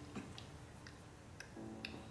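Faint, scattered clicks of someone chewing a bite of pastry, with a soft pitched tone joining near the end.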